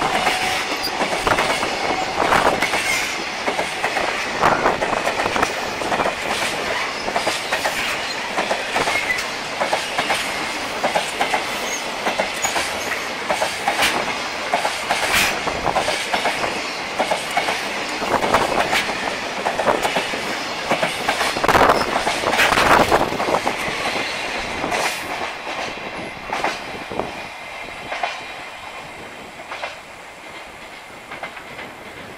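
A long freight train of container wagons rolling past at speed: a continuous rumble with irregular clickety-clack and knocks from the wheels over rail joints. It fades away over the last few seconds as the train's tail passes.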